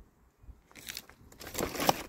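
Empty clear plastic food trays crackling and crinkling as they are handled, starting about a second in and ending in a sharper crack.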